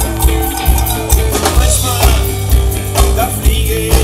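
A live band playing an instrumental passage on electric guitars and drum kit, with a steady beat of drum hits about twice a second.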